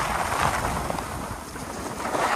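Wind rushing over the camera microphone and skis sliding over packed machine-made snow during a run down a groomed slope: a steady rushing noise that eases off a little past the middle.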